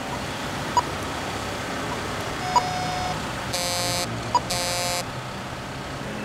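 Pedestrian crossing push-button unit's card reader beeping as a Green Man Plus concession card is tapped on it: a short tone about two and a half seconds in, then two louder, buzzy beeps about a second apart. The beeps confirm that extra crossing time has been granted.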